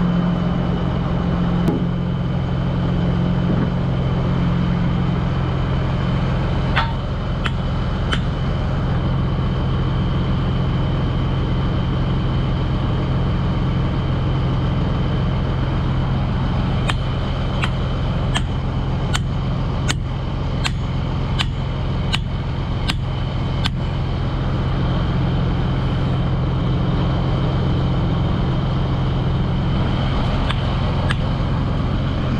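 Heavy diesel engine of a Cat 988 wheel loader running steadily, with a thin high whine over it. A run of sharp clicks, a little more than one a second, comes in the second half, with a few more earlier.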